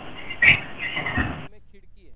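An indistinct, muffled voice over a hissy microphone line, with a louder burst about half a second in; the line cuts off abruptly about one and a half seconds in.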